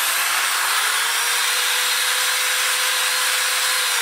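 Power drill spinning an abrasive Dingleberry ball hone inside a valve guide of an aluminium cylinder head: a steady, even whir with a faint constant tone and no change in speed. The hone is smoothing and crosshatching the guide bore.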